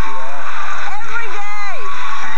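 A person's voice talking loudly, the words not clear.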